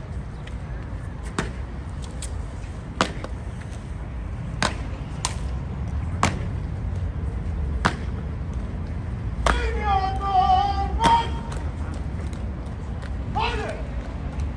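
Sharp clacks from the Evzone guards' hobnailed tsarouchia shoes striking the stone pavement during the slow ceremonial march, one every second or two, over a steady crowd murmur. A voice calls out at length about ten seconds in.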